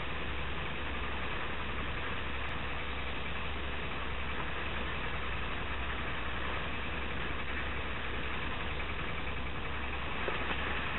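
Steady rushing noise of a yacht underway through choppy sea: wind on the microphone and water breaking along the hull, over a constant low rumble.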